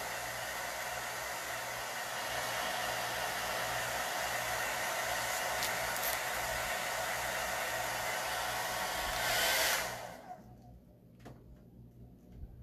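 Handheld hair dryer blowing steadily while it dries wet chalk paste on a transfer. Near the end it briefly gets louder as it is turned up, then it is switched off about ten seconds in.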